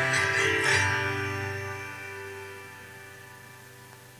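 Acoustic guitar closing the song: a few last strums in the first second, then the final chord rings on and slowly fades away.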